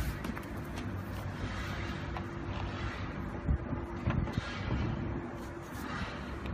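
Steady outdoor background noise with a faint, even hum, and a few soft knocks about three and a half and four seconds in as a power cable and plug are handled.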